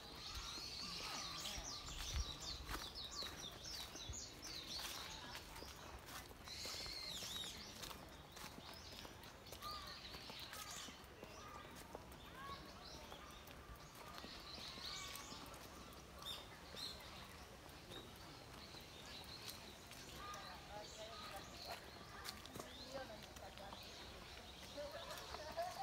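Songbirds chirping and calling over and over in the trees, with the calls thickest in the first few seconds and again midway. Soft footsteps on a paved path tick through the birdsong.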